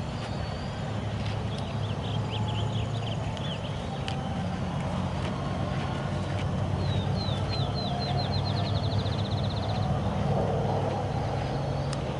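A steady low hum of a running engine, with small birds chirping about two seconds in and a fast trill of evenly repeated high notes in the second half.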